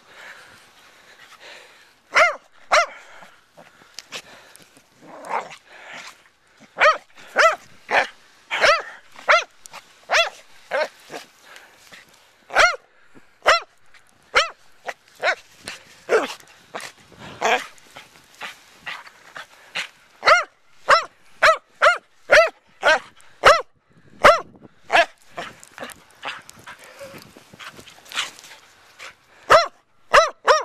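A corgi-Labrador mix dog play-barking in the snow: short, sharp barks, starting about two seconds in and then coming in quick runs of one or two a second with brief pauses.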